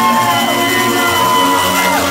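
Loud dance music playing at a party, with long held notes that slide down in pitch about half a second in and again near the end.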